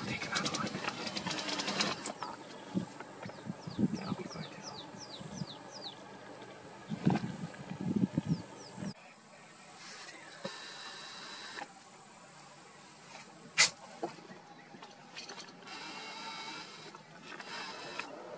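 A bird calling: a run of about ten short whistled notes, each falling in pitch, a few a second, over a murmur of low voices.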